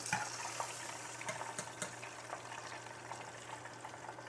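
Hot oil in a deep fryer bubbling and crackling around fried quail breasts as they are lifted out in a wire skimmer, with scattered small pops.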